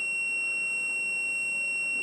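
Fluke multimeter's continuity buzzer sounding a steady, unbroken high-pitched tone. The probes are across the orange and white wires of an ELTH 261N frost stat, and the tone shows that its bimetal switch is still closed while the part is cold.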